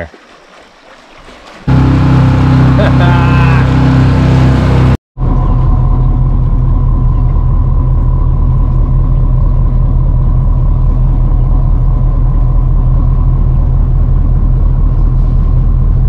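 A boat's engine heard on board while under way: a loud, steady low drone with a thin steady whine on top. It comes in abruptly about two seconds in, after a quieter start, and drops out for a moment about five seconds in.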